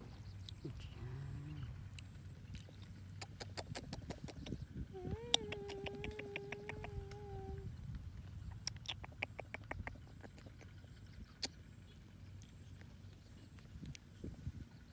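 Runs of quick soft clicks, likely mouth clicks or smacks made to a baby monkey. About five seconds in, a wavering hummed note is held for about two and a half seconds.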